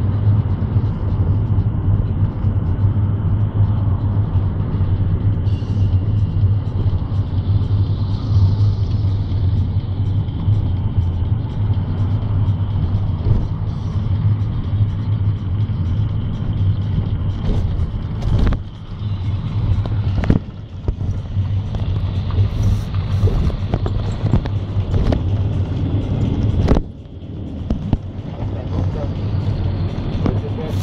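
City bus driving, heard from inside the passenger cabin: a steady low engine hum with road noise. The sound dips briefly three times in the second half.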